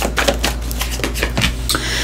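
Tarot cards being thumbed and shuffled off a deck in the hands: a quick run of light card flicks and clicks, with a card laid onto the spread near the end.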